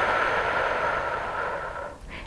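A woman's long, slow exhale through the mouth, close on a clip-on microphone, fading out over about two seconds.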